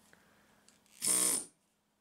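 Pneumatic stone-carving air hammer triggered briefly: about a second in, half a second of steady buzzing with hissing air that cuts off suddenly.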